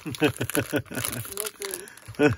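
Voices and laughter, with the foil wrappers of trading-card packs crinkling as scissors cut the packs apart.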